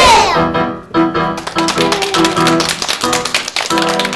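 Piano music, loudest in a sweep at the very start, then chords over a fast, even tapping.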